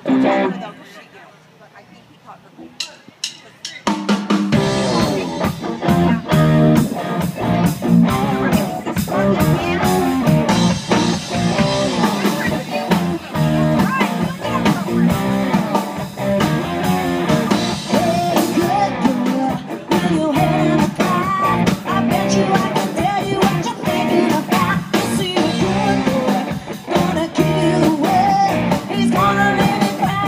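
Live band playing amplified through a PA: drum kit and electric guitars. After a few quiet seconds with a handful of clicks, the full band comes in about four seconds in and keeps a steady groove.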